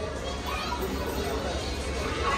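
Indistinct background voices and chatter over a steady low hum.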